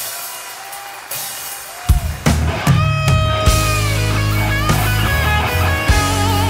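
Southern rock band playing live as a song begins: quiet electric guitar notes, then about two seconds in the full band comes in loud with drums, bass and electric guitars, the lead guitar bending notes and adding vibrato.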